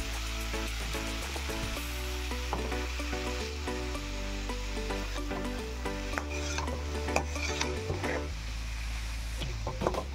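Boiled elephant yam pieces sizzling in hot coconut oil in a metal wok, stirred with a metal spatula that scrapes and knocks against the pan now and then.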